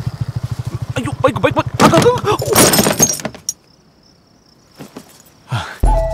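A motorcycle engine idles with a steady low putter and cuts off about three and a half seconds in. Just before it stops, there is a short loud crash of glass shattering. Near the end comes a low thump.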